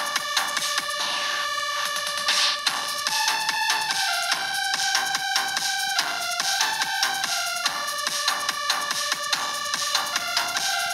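Electronic keyboard music from the ORG 2019 arranger app: a synth melody of held notes stepping between pitches over a steady electronic drum beat.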